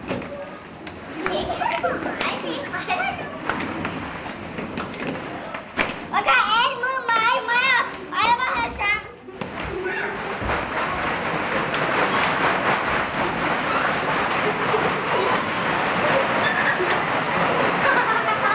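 Children playing and calling out in a plastic ball pit, with high squealing voices about halfway through and many short clicks and knocks of the balls. After a brief dip, a dense steady din fills the rest.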